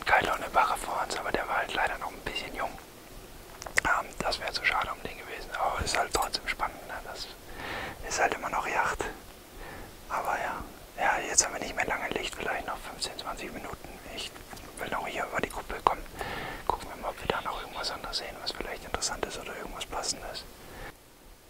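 Whispered speech: a man talking in a whisper, in short phrases with brief pauses.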